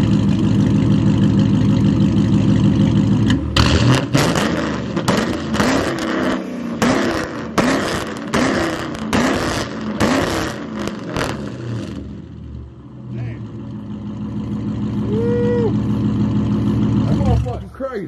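Dodge Charger engine idling loudly, then revved in about eight quick blips, roughly one a second, before settling back to idle and cutting off near the end.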